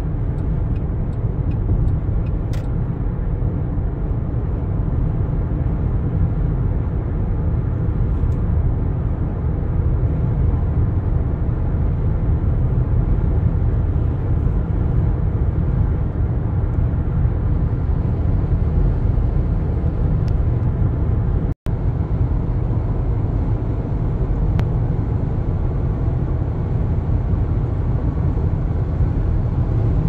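Steady, deep road noise inside a car's cabin at highway speed: tyre roar and engine drone, even throughout. The sound cuts out completely for an instant about two-thirds of the way through.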